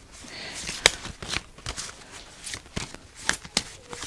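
A tarot deck being shuffled by hand: a soft rustle of cards, then a run of quick, irregular flicks and snaps as the cards slide against each other.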